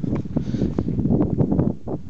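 Wind buffeting the camera's microphone: an uneven low rumble, with small knocks and rustles from the camera being swung about.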